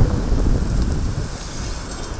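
Shovels digging into a pile of loose gravelly soil, with a fine crackling rattle of stones from about a second in, over a low wind rumble on the microphone.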